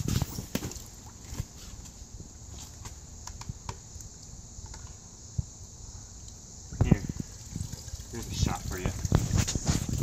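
Small splashes and drips of water as plastic toy scoop nets dip into a shallow inflatable pool, with a sharper, louder noise about seven seconds in.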